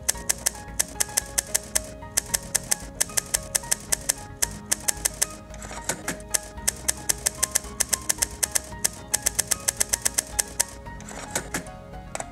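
Manual typewriter keys striking in quick runs of about five clicks a second, broken by short pauses, over background music with sustained tones.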